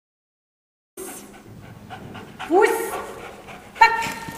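Silence for about a second, then a Belgian Malinois panting hard during bite work. Two loud pitched calls come over it, about two and a half seconds in and again near the end.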